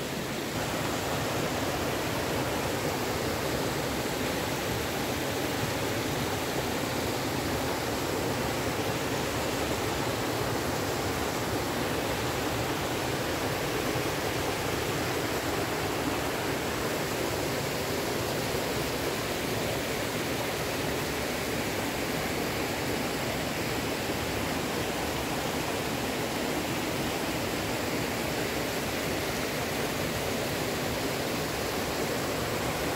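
Mountain stream running over boulders in a small cascade: a steady rush of water.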